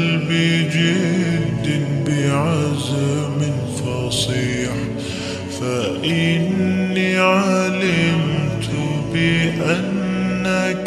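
An Arabic nasheed sung as background music: a chanting voice holds long notes and slides between them.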